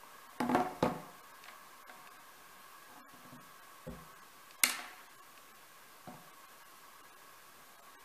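A phone and its USB cable being handled and set down on a hard stone countertop: a few short knocks and clicks. The sharpest and loudest comes about four and a half seconds in, with a low hum throughout.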